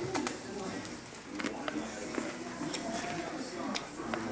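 Faint television speech in the background, with a few brief sharp clicks scattered through it.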